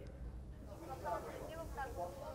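Faint, indistinct voices talking in the background over a low hum.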